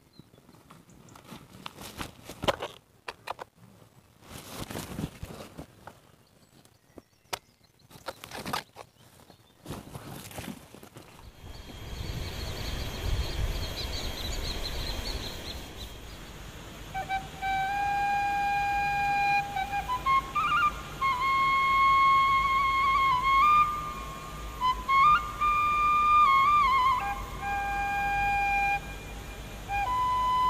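Scattered rustles and knocks for about the first ten seconds. Then a steady rushing noise comes in, and from about halfway a slow flute melody plays as background music.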